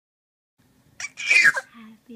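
A single sneeze about a second in: a brief catch, then a short, loud burst of breath.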